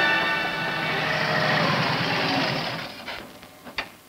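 Motorcycle engine running at a steady note, fading out about three seconds in.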